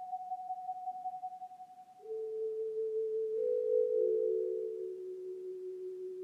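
Slow instrumental music of soft, pure, held tones, one or two notes sounding at a time. A higher note fades away, and about two seconds in new, lower notes enter and overlap, stepping down in pitch.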